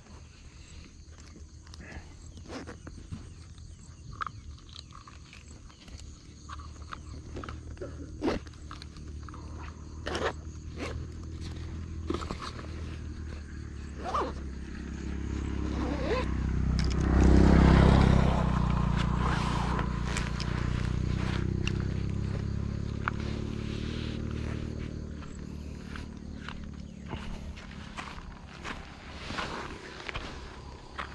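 Camping gear and bags being handled and packed, with scattered clicks, knocks and rustles. A low rumble with a steady pitch swells up a little past halfway, is loudest there, then fades over several seconds.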